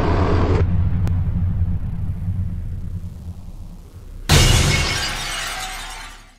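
Logo-intro sound effects: a whoosh cuts off just under a second in, a low rumble fades away, then a sudden loud crash like shattering glass comes about four seconds in and dies away near the end.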